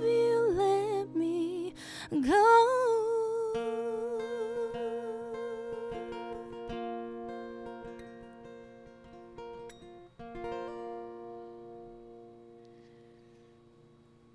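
The closing of an acoustic guitar and vocal song. A voice holds one long wavering note over ringing acoustic guitar notes, and the whole sound fades away to very quiet near the end.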